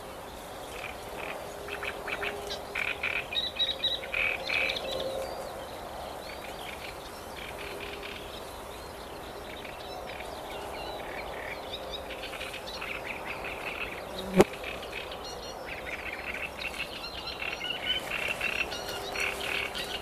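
Frogs calling in rattling bursts, in two spells with a quieter stretch between, over a steady outdoor background. A single sharp click sounds about fourteen seconds in.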